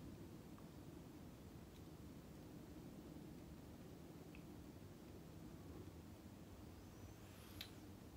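Near silence: faint room tone, with one small click near the end.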